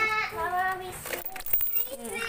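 A toddler's high-pitched, sing-song voice, followed about a second in by a few light clicks as the plastic coin bank is handled.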